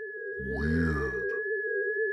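Sci-fi electronic sound effect: a steady wavering low tone with a thin high whistle held over it. About half a second in, a deep, slowed-down, voice-like growl lasts just under a second and ends in a short click.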